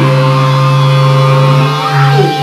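Loud amplified electric guitars holding one distorted chord through the amps, a steady ringing drone with no drums.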